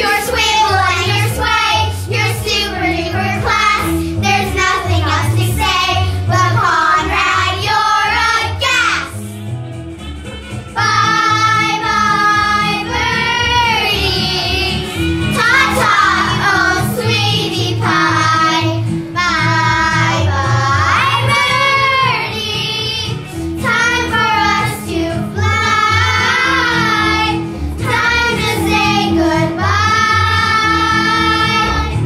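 A group of young girls singing a show tune together over instrumental accompaniment with a steady bass line. The voices drop away briefly about ten seconds in, then come back.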